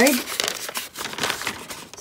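Paper receipt crinkling and rustling in the hand as it is picked up and unrolled, busiest in the first second and dying down after.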